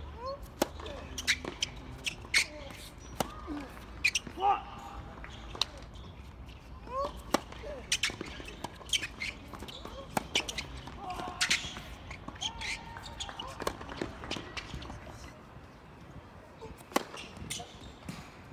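Tennis ball being struck by rackets and bouncing on the court during a rally, as a series of sharp pops at irregular intervals, starting with a serve. Short voiced calls or grunts come between the shots, and the pops thin out near the end as the point finishes.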